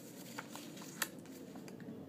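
Faint rustle and a few soft ticks of a hand-held paper flashcard being turned the right way up; the sharpest tick comes about a second in.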